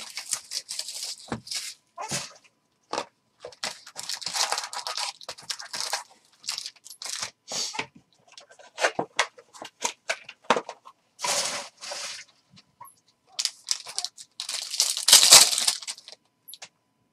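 A trading-card hobby box being torn open and its plastic-wrapped packs rustling and crinkling as they are handled, in irregular bursts. Near the end a pack wrapper is torn open, the loudest crinkling.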